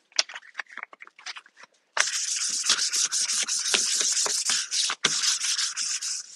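Hand scuff-sanding a painted, lacquered cabinet door with 320-grit sandpaper: quick back-and-forth scratchy strokes that start about two seconds in, after a few light handling clicks, with a brief break near the end. The scuffing takes the sheen off the factory finish so that new paint will grip.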